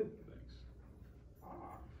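Faint, indistinct voices in a small room: students answering from a distance, too quiet to make out, with a brief louder sound right at the start.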